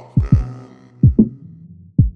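Boom bap hip hop instrumental: deep kick drums hitting in quick pairs over a held low chord.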